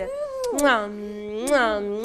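Kissing sounds: drawn-out 'mmm' voice sounds that glide up and down in pitch, with sharp lip smacks about half a second and a second and a half in.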